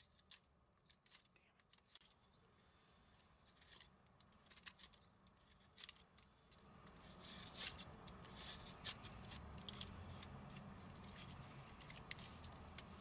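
Small knife whittling a maple spoon blank: faint, short scraping cuts in irregular strokes, coming faster and more densely in the second half.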